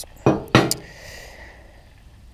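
Two sharp metal knocks, a square steel tube being laid down on a steel plate, about a quarter and half a second in.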